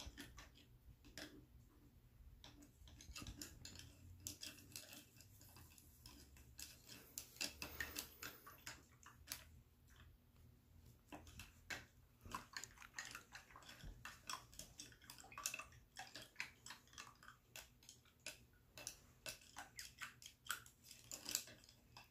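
Faint, irregular clicks and taps of paintbrushes being stirred in a paper cup and knocking against its rim.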